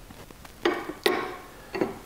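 A few light clicks and knocks of hard objects being handled and set down: one about half a second in, a sharper one about a second in, and another near the end.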